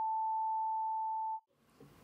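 Electronic beep sound effect: a single pure high tone held steady, then cutting off about a second and a half in.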